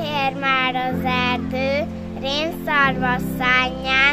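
A young girl singing a children's song, holding and sliding between high notes, over instrumental music with sustained chords that change about every two seconds.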